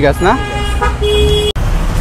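Vehicle horns sounding twice in street traffic, each a short held tone, over a steady low rumble of traffic.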